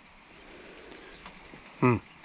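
Faint, steady workshop background noise with a few faint ticks, then a man's short 'hmm' near the end.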